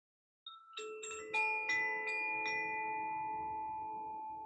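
Hand-held bamboo chime shaken by its cord, starting about half a second in, so that its metal rods strike about seven times in two seconds. Several clear, bright tones build up and then ring on, slowly fading.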